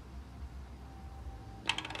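Low room hum, then a quick run of light clicks near the end from the jug's plastic cap parts being handled.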